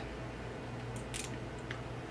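Small screw being turned by hand with a hex driver into a plastic RC drivetrain part: a couple of faint, short clicks about a second in, over a steady low hum.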